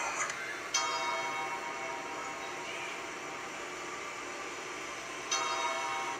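A bell-like chime from a TikTok clip's audio, heard through a phone's speaker: struck about a second in, ringing and slowly fading, then struck again near the end.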